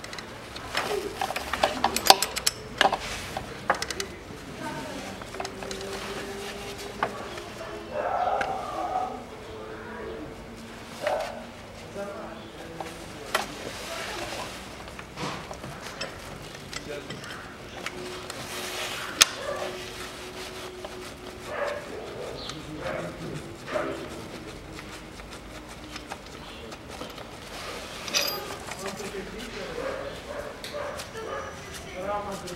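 A steel wrench clinking and clicking on metal bolts in a car's engine bay as fasteners are undone, with a dense run of sharp clicks in the first few seconds and scattered knocks after.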